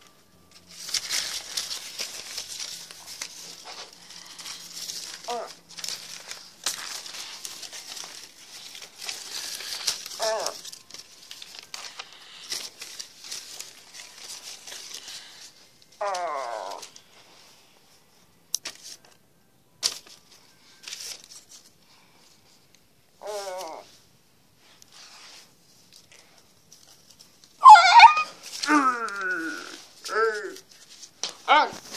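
Paper cutouts rustling and crinkling as they are handled and moved, steady for about the first fifteen seconds and then only now and then. Short vocal sounds that fall in pitch break in several times, with a loud burst of voice near the end.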